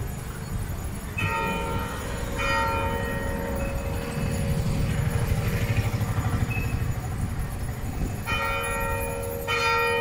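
Church bell ringing, struck twice near the start and twice again near the end, each stroke ringing on and fading, over a low uneven rumble.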